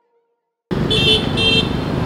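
Silence, then street traffic noise cuts in abruptly, with two short vehicle horn toots.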